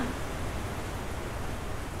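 Heavy rain falling steadily, heard from indoors as an even hiss.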